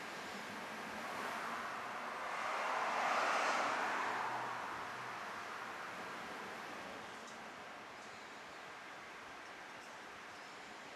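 Water pouring from a plastic bag into gasoline in a plastic gas can: a trickling pour that swells louder about three seconds in, then tapers to a thin trickle.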